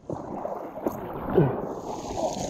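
Moving river water and wind on the microphone, a steady noisy hiss with a short click about a second in.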